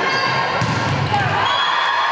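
Natural sound from a high school volleyball match in a gymnasium: crowd voices with ball play on the court.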